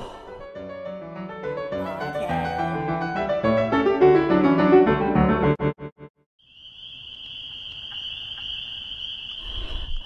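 Relaxing piano music playing from a phone stutters and cuts off suddenly about six seconds in. After a brief silence, a steady high-pitched tone begins and holds.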